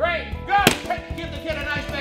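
A balloon bursting once, a single sharp crack about two-thirds of a second in, with music playing behind.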